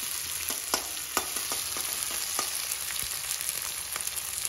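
Chopped onions, capsicum and green chillies sizzling in hot oil in a steel kadai as a metal spatula stirs them, with irregular clicks and scrapes of the spatula against the pan.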